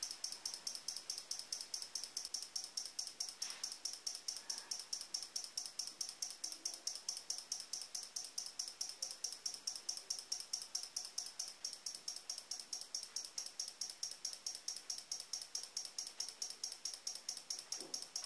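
A 12-volt relay in a homemade relay-and-capacitor flasher circuit clicking on and off in a fast, even rhythm, about four clicks a second, as it oscillates and switches the LED.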